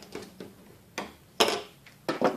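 A few scattered light clicks and knocks from tools and strap hardware being handled against a plastic trash can, the loudest about one and a half seconds in.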